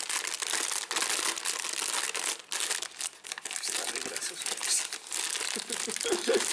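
Empty foil-lined snack bag crinkling continuously as hands turn it inside out and work it open.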